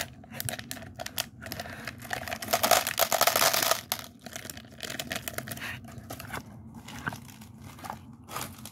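Plastic candy wrapper crinkling as small coated candies are shaken out of it into a plastic bowl, with many small clicks of pieces dropping. The rustling grows loudest for about a second, around the middle.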